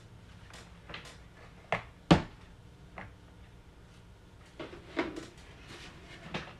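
A few light knocks and taps of kitchen containers being handled and set down on a table, one sharper knock about two seconds in and a small cluster near the end.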